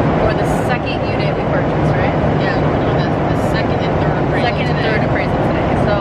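Steady drone of a passenger jet's cabin, a dense low noise running evenly throughout, with faint indistinct voices over it.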